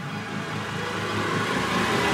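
A rushing swell of noise on the soundtrack, growing steadily louder.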